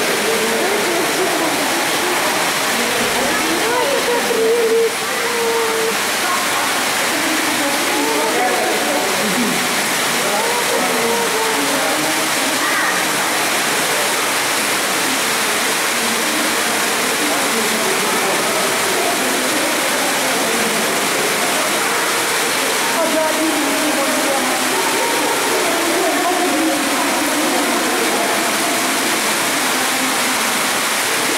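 Steady rush of water running through a salmon hatchery's fry rearing tank, with indistinct voices murmuring underneath.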